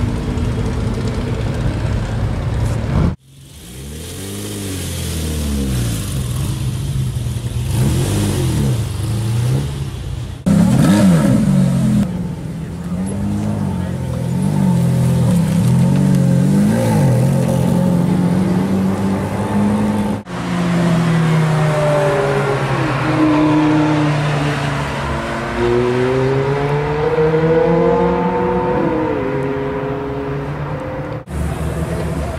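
Sports car engines revving and accelerating in several short clips cut together, starting with a Nissan GT-R pulling away. Engine pitch rises and falls with each blip of the throttle, and near the end a car accelerates hard with the pitch climbing repeatedly.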